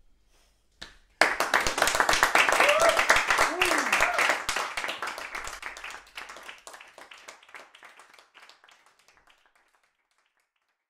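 A small audience breaking into applause about a second in, with a voice calling out briefly, then the clapping thins and dies away over the last few seconds, marking the end of the performance.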